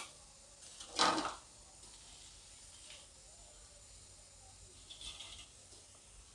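A metal slotted spoon knocks once against the kadhai about a second in while fried urad dal bhalle are lifted out, over a faint steady sizzle of bhalle frying in hot oil.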